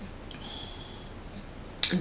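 A pause in a woman's talking: quiet room noise with a faint high tone for a moment early in the pause, then a sharp click just before her voice starts again near the end.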